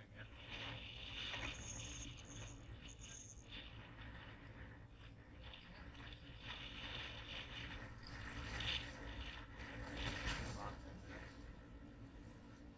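Outdoor noise on open water around kayaks: a steady low rumble of wind on the microphone, with water sounds and scattered small knocks and scrapes of fishing gear being handled.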